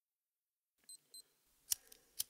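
A camera's two quick high electronic beeps, like autofocus confirmation, then a sharp shutter click.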